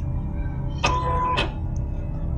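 Silhouette Cameo 3 cutting machine making a brief steady tone of about half a second, starting and stopping with a click, over a steady low hum. The touchscreen is faulty.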